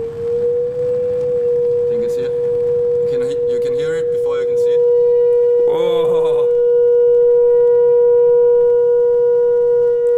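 Pure sine test tone played through the Pyro Board's loudspeaker, gliding up in pitch over the first second and then held steady on one of the gas-filled box's standing-wave resonances. A fainter tone an octave higher joins about halfway through.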